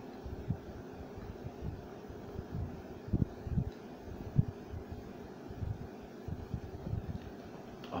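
A man gulping beer from a pint glass: a run of irregular low swallowing thumps, heaviest a few seconds in, over a steady room hum.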